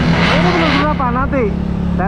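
Motorcycle engine running steadily at a low cruising speed, heard from the rider's seat. A rushing noise from riding dies away a little under a second in.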